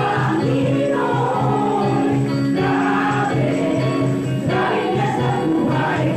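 Gospel choir singing a worship song over accompaniment with a steady low beat.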